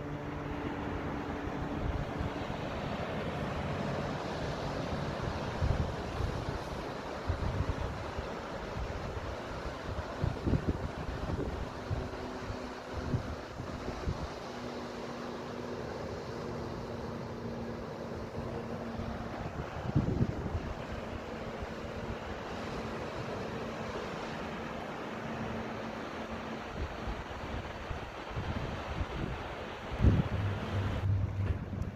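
Ocean surf breaking on a beach below, a steady rush, with wind buffeting the microphone in low gusty rumbles, the strongest gust about two-thirds of the way through. A faint steady hum sits underneath for part of the time.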